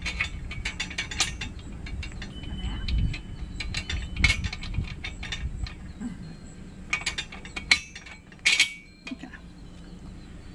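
Metallic clicking and clinking of a wrench and bolt being worked loose on the steel frame of a trailer dolly, in several bursts of rapid clicks.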